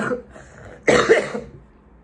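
A woman coughs once, briefly, about a second in.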